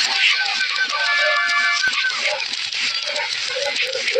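Cartoon soundtrack played backwards: reversed music mixed with garbled, reversed voices.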